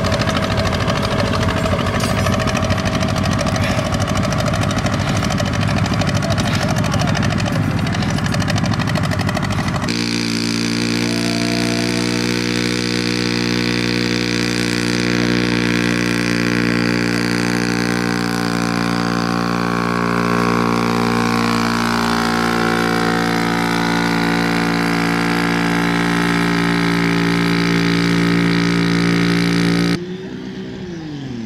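Vintage tractor engines running with a rough, pulsing sound; after an abrupt cut about a third of the way in, the engine of a single-axle two-wheel tractor runs at a steady, even pitch.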